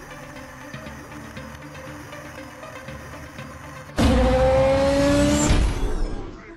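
Quiet background music, then about four seconds in a racing car's engine comes in suddenly and loudly, revving up with its pitch rising for about two seconds.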